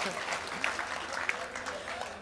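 Audience applauding and laughing, with scattered voices.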